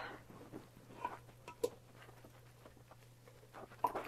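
Faint, scattered soft clicks and wet squishes of a spoon stirring and pressing chunks of roasted vegetables in broth in a stainless steel pot, over a faint steady low hum.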